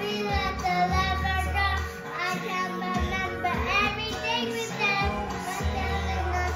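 A young boy singing along to a country song playing back with guitar and bass.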